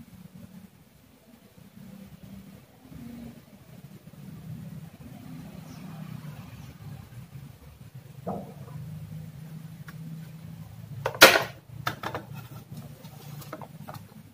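Handling noise on a wooden workbench as power adapters and multimeter test leads are moved: a few clicks and knocks, the loudest a sharp knock about eleven seconds in, over a low steady hum.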